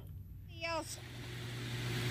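Outdoor background noise with a steady low hum, fading in and growing louder, with a brief bit of voice about half a second in.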